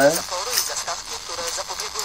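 Indistinct talking, quieter than the conversation around it, with no clear words.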